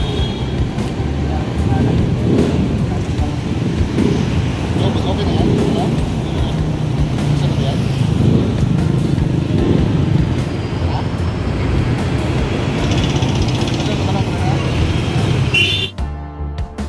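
Street traffic noise: a steady low rumble of motor vehicles running close by, with indistinct voices of people talking.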